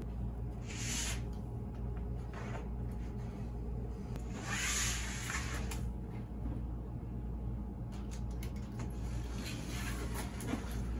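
Utility knife trimming excess sheeting from the edge of a traffic sign: a few short scraping, rustling strokes, the longest about four to five seconds in, over a steady low hum.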